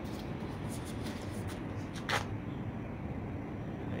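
Steady low background noise, with one brief rustle or scrape about halfway through.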